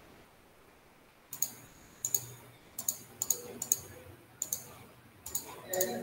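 Keystrokes on a laptop keyboard: after a quiet first second, about fifteen sharp key clicks in short, irregular runs.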